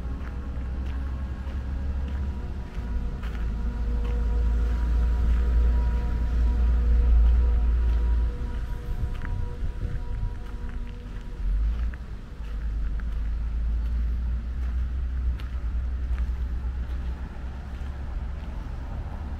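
Outdoor ambience dominated by a low rumble that swells and fades, loudest around the middle, with faint steady tones and scattered light ticks above it.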